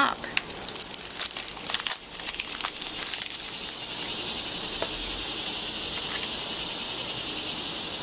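A clear plastic sticker sleeve crinkling and crackling as it is opened and the sticker sheets are slid out, for about four seconds. After that a steady high hiss takes over until the end.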